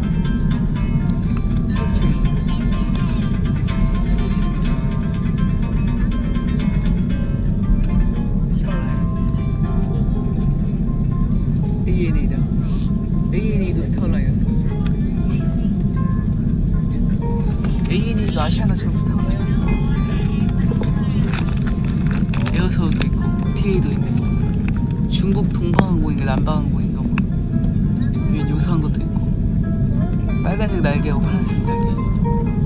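Steady low cabin rumble of an Airbus A330 taxiing on the ground, with music and indistinct voices over it.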